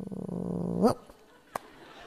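A man laughing close to the microphone: a low, rapidly pulsing chuckle that rises in pitch and breaks off just under a second in, followed by a single click and faint room noise.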